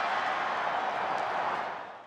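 Stadium crowd noise, a steady din from the home crowd reacting to their kicker's missed short field goal, fading away near the end.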